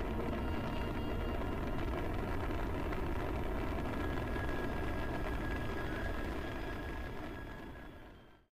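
Sci-fi spaceship engine rumble sound effect, a steady dense roar with a few faint held tones in it, fading out over the last two seconds.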